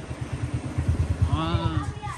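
A small engine runs with a steady, fast low throb, like a motorcycle idling nearby. A short voice call, rising then falling in pitch, comes near the end.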